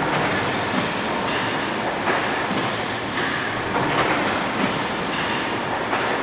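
Stationary steam pumping engine running: a steady mechanical clatter from its crank and rods, with a slow repeating beat.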